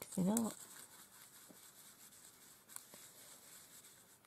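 A woman's brief wordless hum, a pitch that dips and rises, in the first half second. Then only faint soft scrapes and a light tap as a fan brush is worked in white acrylic paint on a palette.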